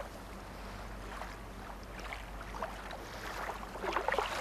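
Faint, steady background noise with a low hum underneath and a few weak sounds rising out of it.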